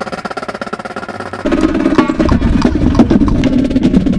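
Drum and bugle corps music: a drumline plays a fast snare rhythm, and about a second and a half in a louder sustained brass chord and low drums come in.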